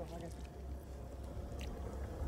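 Boat engine running, a low steady rumble, while a fish is being played at the side of the boat.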